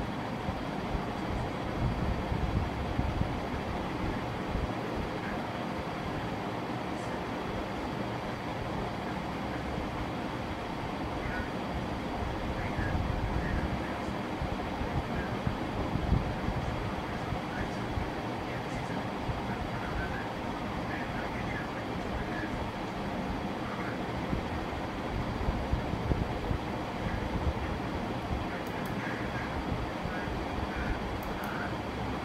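Steady low rumbling background noise, with no sudden events.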